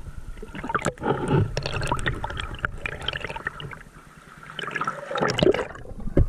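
Water sloshing and gurgling against a camera held at the water's surface, with irregular small splashes and clicks; it dips quieter about four seconds in and grows louder again near the end.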